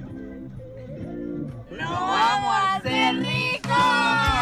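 Film score music with a repeating low bass line. About halfway through, several men's laughter joins over it and grows louder.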